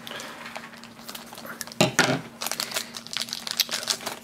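Shiny plastic blind bag crinkling and crackling as it is pulled open by hand. It is quieter at first and turns into a dense run of crinkles from about two seconds in.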